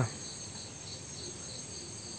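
Steady high trilling of field insects, faint under a low background hiss.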